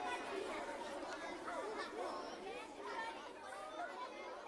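Faint chatter of several voices talking over one another, with no clear words.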